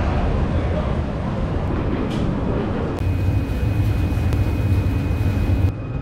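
Loud, steady low rumble of the Staten Island Ferry and its boarding noise. About halfway in the rumble grows heavier and a thin steady high whine joins it, and both cut off abruptly shortly before the end.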